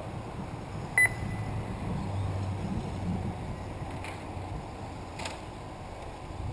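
A single short, high electronic beep about a second in, over a steady low rumble, with a faint click near the end.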